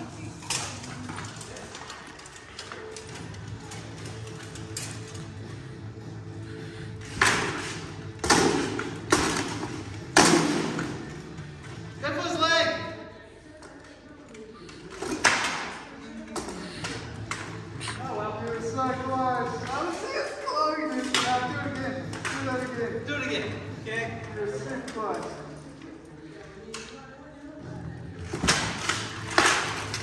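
Swords striking shields and armour in armoured sparring: a quick run of four sharp hits about a quarter of the way in, another around halfway, and a couple more near the end, echoing in a large hall.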